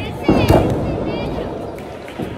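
Two heavy thuds close together, about a third and half a second in, as wrestlers' bodies hit the ring, with spectators shouting around them.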